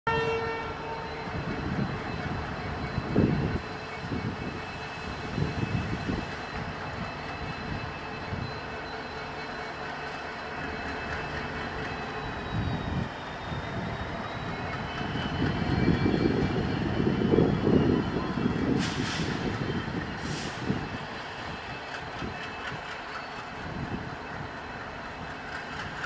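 ALCO WDG-3A diesel locomotive's engine chugging in uneven low beats as it starts a train, growing louder for a few seconds around the middle as it is throttled up. A horn tone sounds briefly at the very start, and two short hisses come near the end.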